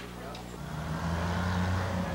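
An engine running with a steady low hum, starting about half a second in.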